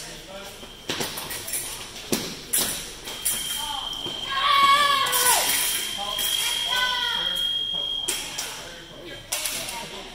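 A steady high electronic tone from a fencing scoring machine sounds for about five seconds, the signal that a touch has been scored. A few sharp knocks come before it, and a child's high-pitched shout rises over it early on.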